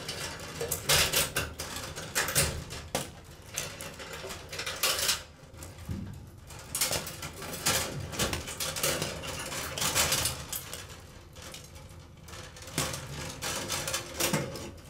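Wires and plastic wire nuts being handled and pulled along the sheet-metal housing of an open fluorescent light fixture. The sound is irregular scraping, rustling and small clicks and rattles.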